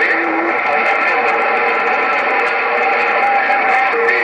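Uniden HR2510 radio's speaker putting out steady static on 27.085 MHz (CB channel 11), with faint wavering tones and garbled distant voices in the hiss.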